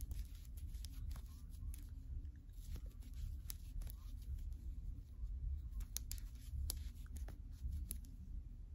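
Faint crochet handling sounds: long fingernails clicking lightly and irregularly against a metal crochet hook, with yarn rustling as it is worked, over a low steady room rumble. Little to no sound, barely heard.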